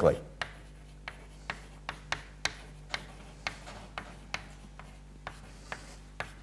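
Chalk writing on a chalkboard: a string of irregular sharp taps and short scrapes as a line of text is written.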